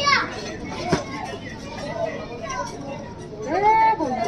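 A child's voice: a short vocal sound at the start and a longer call that rises and falls near the end. A single sharp click comes about a second in.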